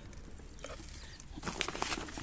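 Quiet at first, then about one and a half seconds in, a faint patter and rustle as a handful of ammonium sulfate granules drops into a plastic watering can.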